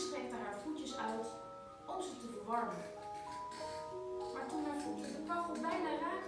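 Keyboard playing a slow run of held notes, with a voice heard over it in places.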